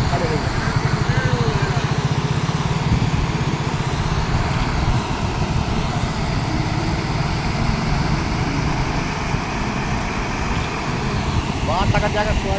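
Muddy floodwater rushing through a damaged culvert: a steady, loud noise with a deep rumble underneath. Faint human voices come through it in the first second or so and again near the end.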